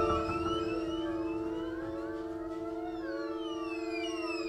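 Live ensemble music: a steady held low note with many overlapping sliding pitches above it, mostly falling, in a slow, ambient passage.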